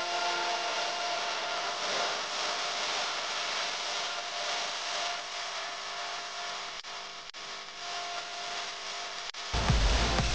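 A wooden spatula stirring and scraping sliced onions and tomatoes in an aluminium pressure cooker, under background music. A deeper, bass-heavy part of the music comes in near the end.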